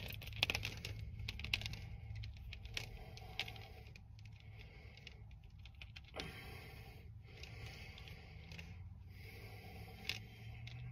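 Green elastic cords with metal hooks being handled: quick light metallic clicks and rattles for the first few seconds, then softer scattered handling noises, over a steady low hum.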